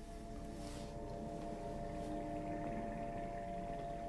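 A faint, steady drone of a few held tones over a low hum, running without change.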